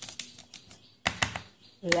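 Plastic brush pens clicking against each other and the desk as they are handled: one click at the start and a quick run of clicks about a second in.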